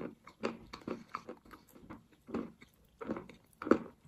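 Close-miked chewing of a crunchy piece of food, with irregular crisp crunches a few times a second and the loudest crunch about three-quarters of the way through.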